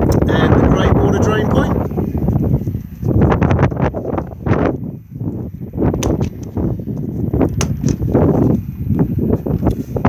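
Low rumbling noise on the microphone, with a voice talking indistinctly in the first couple of seconds. Sharp clicks and knocks come about six to eight seconds in, as the motorhome's plastic toilet-cassette locker door is unlatched and pulled open.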